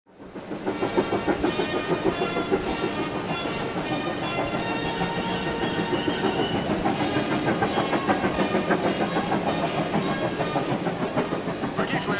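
Steam locomotive hauling a train of coaches, its running and rail clatter steady throughout, with several held pitched tones over the rhythm. The sound fades in at the start.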